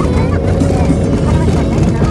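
Steady engine and tyre rumble heard inside a car's cabin as it drives a rough dirt road, with voices over it.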